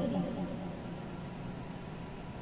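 The echo of a spoken phrase dies away from the karaoke machine's speaker in the first half second. After that there is a steady hiss and faint low hum from the speaker with its microphone still live.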